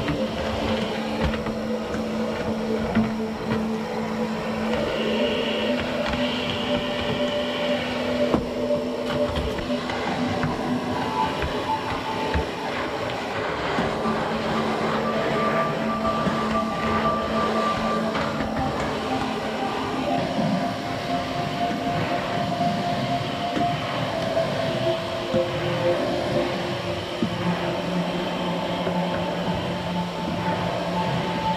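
Vacuum cleaner running steadily as its nozzle is worked over hard tile and wood floors, under soft background music of long held notes that change every few seconds.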